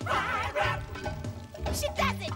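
Cartoon background music, with short wordless vocal sounds from a character over it, wavering in pitch in the first second.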